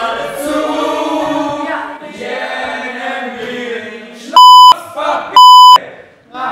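Voices singing, broken off near the end by two loud, steady censor bleeps, each about a third of a second long and a second apart, blotting out what is said or sung.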